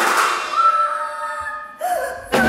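Live contemporary chamber-ensemble music: a loud chord at the start, then a single held high note that fades away, and a brief snatch of another tone just before the end.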